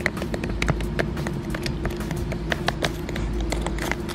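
Small toy chisel and pick tapping and scraping at a wet dig brick, a run of irregular small clicks and scratches several times a second as the brick crumbles, over a steady background hum.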